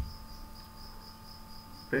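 Background noise between words: a steady high-pitched whine with a faint low hum beneath it.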